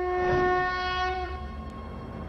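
Sound-design sting for an animated zodiac-wheel graphic: a held chord of several steady tones with a rising whoosh swelling over it, cutting off about a second and a quarter in, then a low rumble.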